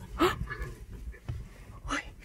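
A buck's short distress cries as a predator tackles it: one loud cry with a falling pitch about a quarter second in and another near the end, over a low rumble.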